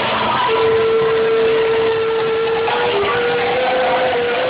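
Live rock band starting a song: a long held note of about two seconds, then a few shorter notes just above it, over a loud, dense wash of band sound.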